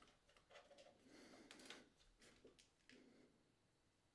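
Very faint clicks and rubbing from hands adjusting the plate and arms of a Zhiyun Crane 2S camera gimbal while balancing it, mostly in the first three seconds, against near silence.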